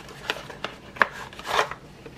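Cardboard box being handled and a nylon sheath slid out of it: light rustling and scraping, with a sharp tap about a second in and a longer scrape about halfway through.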